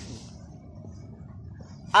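A pause in speech: faint steady outdoor background noise, with the tail of a spoken word fading at the start.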